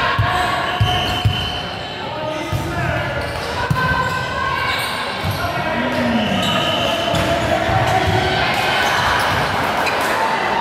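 Indoor volleyball play in a reverberant sports hall: a few sharp hits of the ball in the first four seconds, shoes squeaking on the court floor, and players' voices calling out.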